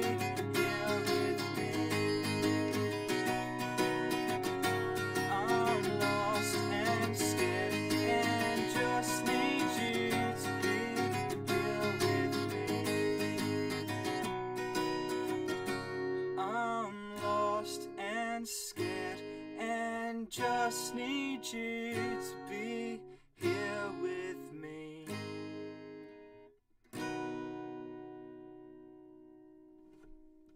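Acoustic guitar being strummed steadily, thinning after about 14 s into separate chords with gaps between them. It ends on a final chord about 27 s in that rings on and slowly fades: the close of the song.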